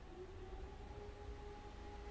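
Quiet room tone: a low steady rumble with a faint, steady hum-like tone that comes in just after the start and holds.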